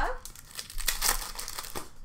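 Crinkling of a foil trading-card pack wrapper being handled, a dense run of crackles lasting about a second and a half.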